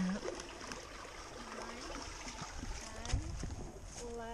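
Faint voices in the background over a steady outdoor hiss, with one low thump about three seconds in.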